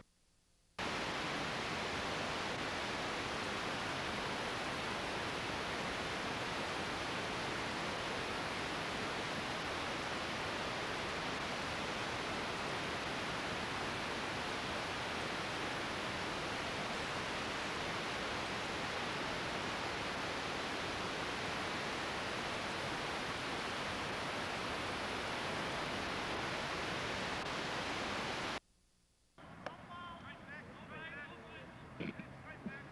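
Steady, even hiss with nothing else in it, cutting in abruptly just under a second in and cutting out abruptly near the end: the noise of a videotape audio track carrying no recorded sound.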